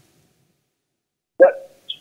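Silence for about a second and a half, then one short vocal sound from a man on a telephone line, a brief 'uh' or half-word that fades out quickly.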